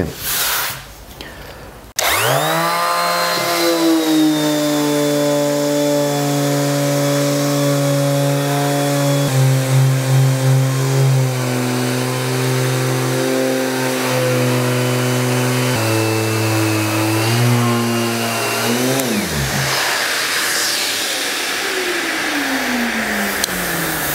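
Einhell TE-OS 2520 E orbital finishing sander switched on about two seconds in, running up to a steady pitched hum while sanding layers of old paint off a wooden door with 180-grit paper; its pitch shifts slightly twice. About five seconds before the end it is switched off and winds down with a steeply falling whine, and a second, slower falling whine follows.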